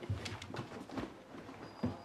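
A few scattered knocks and shuffles of people getting up out of a booth and hurrying off on foot. Short thumps come near the start, about a second in, and again near the end.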